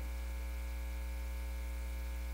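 Steady electrical mains hum, a low buzz with a ladder of higher overtones, left bare while nobody speaks into the sound system.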